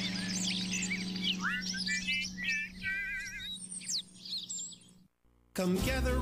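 Cartoon bird chirps and warbling trills over a held music chord that fades away. The sound drops to a brief silence about five seconds in, and then the next song starts.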